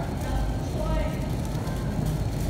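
Shopping cart rolling over a concrete warehouse-store floor, a steady low rumble, with faint voices of other shoppers behind it.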